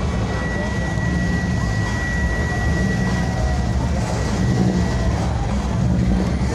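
Low, steady rumble of lowrider car engines idling, with people talking in the background; a thin steady high tone runs until about five seconds in.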